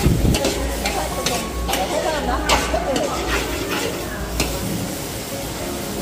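A metal spatula scraping and knocking against a large aluminium wok, several separate strokes, while a chili, garlic and fermented soybean paste sizzles in oil.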